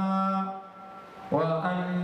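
A man's voice reciting a Quranic verse in a melodic chant, holding long drawn-out notes. It fades in the middle and a new phrase begins about two-thirds of the way through.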